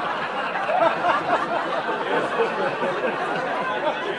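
Indistinct chatter of several voices talking over one another, with chuckling, and laughter near the end.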